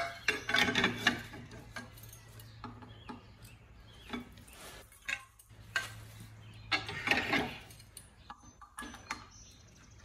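Irregular metal clinks and clicks as diamond tooling plates are fitted and locked onto the grinding heads of an HTC 800 concrete floor grinder, over a faint steady low hum.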